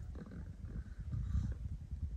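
Wind buffeting the microphone: an uneven low rumble that swells and dips, a little stronger around the middle.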